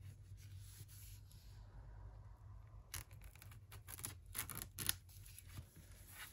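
Folding knife slitting the plastic shrink wrap along the edge of a vinyl LP sleeve, the film rustling softly, then a run of sharp crackles and snaps from about three seconds in.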